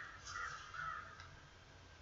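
A bird calling in the background over an open microphone: a few short calls close together in the first second, then faint room hum.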